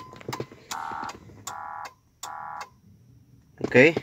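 Ford Grand Marquis's dashboard warning chime sounding three short beeps about three-quarters of a second apart, among sharp clicks, set off on its own while a scan tool checks for trouble codes.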